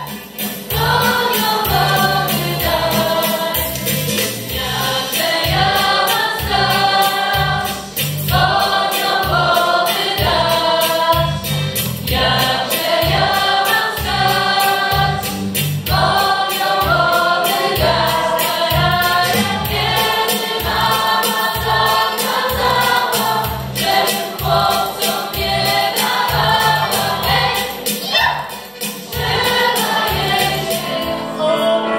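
A female vocal group singing a song in harmony through microphones, over amplified instrumental accompaniment with a steady bass beat.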